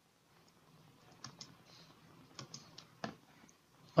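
Faint computer keyboard typing: a few light, irregular key clicks between about one and three seconds in.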